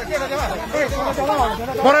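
Speech only: people talking over one another at close range, with a voice calling out a name near the end.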